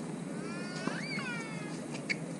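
Tennis shoe squeaking on a hard court as a player moves for a shot. The squeal lasts about a second, rising in pitch and then falling. A single knock, a racket hitting the ball, comes near its start.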